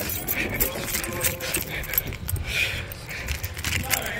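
Rattling and jingling with quick footfalls from someone running with a handheld camera, a dense run of short clicks.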